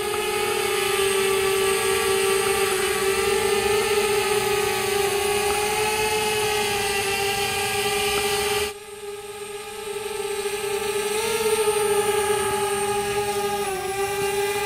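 DJI Spark quadcopter hovering under gesture control, its propellers giving a steady high whine that wavers slightly in pitch. The whine drops away suddenly just before nine seconds in, then builds back up.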